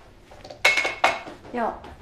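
Kitchen utensils and dishes clinking on a counter: two sharp clinks, the first ringing briefly.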